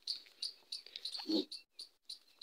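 Insects chirping steadily in the background in short, high chirps, about four a second. A brief low voice sound comes a little past halfway.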